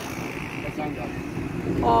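Steady low road and engine rumble of a moving vehicle driving along a city road.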